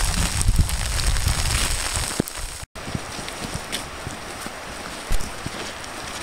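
Sleet pellets striking a jacket and backpack strap close to the microphone: a dense hiss of many small ticks. After a sudden break about two and a half seconds in, a quieter run of scattered ticks.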